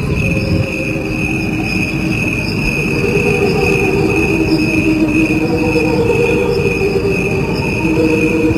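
Crickets chirping in a high, steady trill, with a slowed-down copy of the same cricket song underneath. Slowed down, the chirping turns into low, wavering tones that sound like a choir singing.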